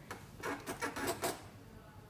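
Faint rubbing and small clicks of hands working a dental training mannequin's jaw closed onto a plastic bite-wing holder. The clicks come thick in the first second or so, then it goes quieter.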